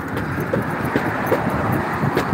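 Steady rushing noise of road traffic, with a few faint ticks.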